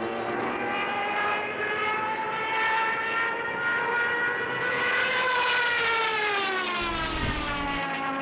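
Propeller aircraft engine droning. Its pitch rises slightly, then falls from about five seconds in as the plane passes.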